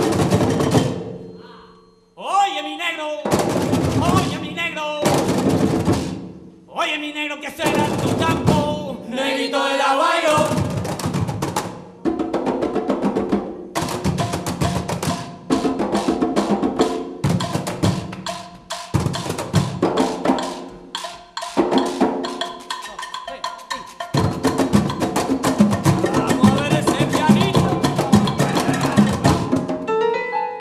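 Afro-Peruvian percussion ensemble of cajones, with congas, playing a festejo rhythm. In the first ten seconds the drumming comes in short phrases broken by sudden pauses, with a voice calling out between them, like a call-and-response testing the cajón players. From about twelve seconds in the drumming runs on steadily.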